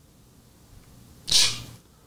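A person's short, breathy vocal sound, like a quick huff of breath, about one and a half seconds in, in an otherwise quiet pause between speech.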